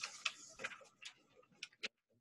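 A few faint clicks, the last three close together near the end.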